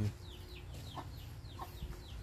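Baby chicks peeping: a steady run of short, high, falling peeps, about four a second, with a couple of lower clucks from a hen in between.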